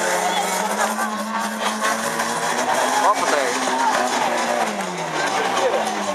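Banger racing cars' engines running on the track, one engine note falling in pitch as it slows near the end, with crowd voices around.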